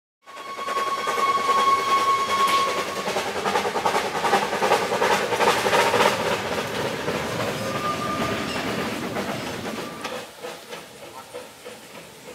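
Narrow-gauge steam locomotive whistle blowing one long note for about three seconds, followed by the locomotive working along the track with its chuffing and wheel clatter. A second short whistle comes about eight seconds in, and the sound eases off near the end.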